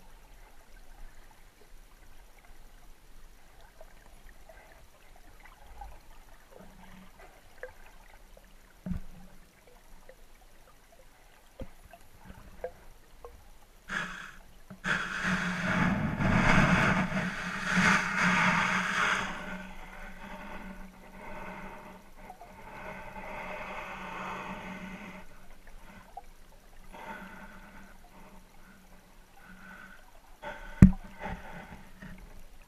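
Underwater sound through an action camera's waterproof housing: faint water noise with scattered small clicks. About 14 seconds in comes a loud rushing swirl of water, lasting about five seconds, as a wels catfish's tail sweeps right past the camera, then a softer swell of water noise.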